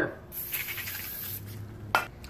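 Aerosol can spraying onto a brake wheel-cylinder part, a steady hiss of about a second starting shortly in, followed by a sudden click near the end.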